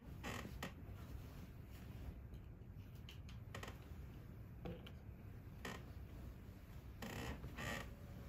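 Soft, scattered rustles and faint creaks of bedding as a person shifts under the covers, over a low steady room hum.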